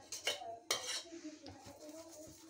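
A metal spoon scraping and clinking on a paratha cooking on a tawa griddle, spreading ghee over it. There are two quick scrapes in the first second, the second one longer.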